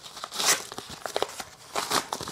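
Packaging being handled and opened by hand: crinkling and tearing rustles, loudest about half a second in and again near the end, with small clicks between.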